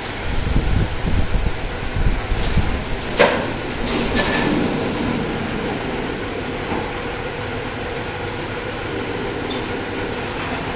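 CNC vertical machining centre moving its spindle head, with a low rumble for the first few seconds. Two sharp metallic clunks about three and four seconds in, then the machine's steady running hum.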